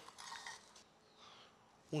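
Faint, brief scraping of a wooden spatula against a nonstick frying pan as a crisp tapioca is slid out, with a few soft handling noises.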